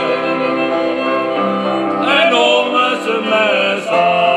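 Two male voices singing a Moravian folk song in duet, accompanied by a cimbalom band with fiddles. The notes are held long at first, with a livelier, ornamented passage in the second half and a strong new entry at the end.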